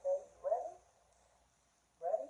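A woman's voice: two short spoken sounds in the first second, then low room tone.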